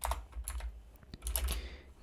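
Computer keyboard keystrokes: a few separate, irregular key taps while code is being typed and corrected.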